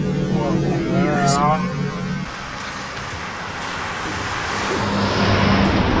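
A wavering pitched voice over steady low tones for about two seconds, then a rushing noise that swells in loudness over about four seconds.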